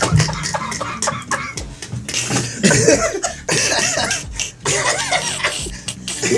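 Several people laughing hard over each other in loud, uneven bursts, some of it breaking into coughing.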